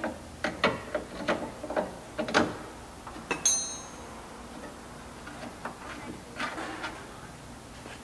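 Metal clicks and clinks from a hand tool loosening the latch adjustment inside a stripped car door. There is a quick, uneven run of sharp clicks, then a ringing metallic clink a little after three seconds, then a few softer clicks later on.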